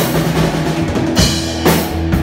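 Live rock band playing: a drum kit with regular kick and snare hits over a sustained electric bass line, with electric guitar. A brighter cymbal wash comes in a little past halfway.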